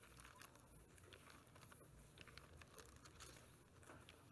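Faint rustling and soft scattered ticks of thin Bible pages being leafed through.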